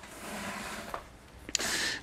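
Quiet garage room tone with faint rustling, then a small click about one and a half seconds in and a short hissing breath in just before speech resumes.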